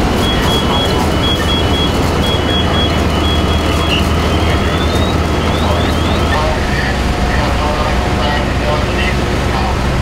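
Fire engine running steadily at a working fire, its low hum under the hiss of a hose line spraying water, with an intermittent high beeping through the first few seconds and a few short rising chirps after.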